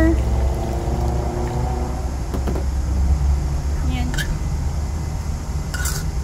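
Water poured from a plastic container into a wok of stir-fried vegetables, over a steady low rumble.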